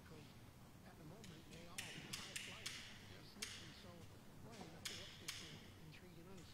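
A hushed, echoing church with faint murmured voices and a scatter of about nine short, sharp clicks and taps between one and five and a half seconds in.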